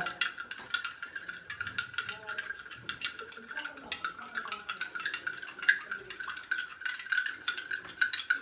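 Metal teaspoon clinking rapidly and irregularly against a drinking glass as salt is stirred into water to dissolve it, with a steady high ringing underneath and one sharper clink about halfway through.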